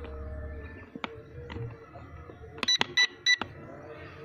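A quick series of about four short, high electronic beeps close to the microphone, about three seconds in, over a faint steady hum.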